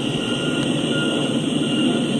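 Freight train cars (tank cars and covered hoppers) rolling past on the rails in a steady rumble. A faint thin high tone comes and goes.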